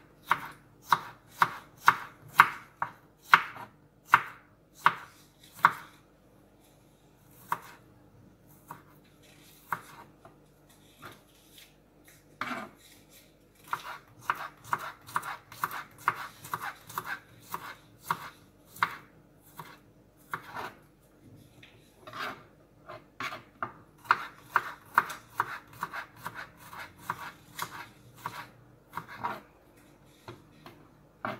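Kitchen knife chopping garlic on a wooden cutting board: sharp knocks of the blade striking the board, one or two a second at first, only a few scattered strokes for a while, then quicker runs of several chops a second through the second half.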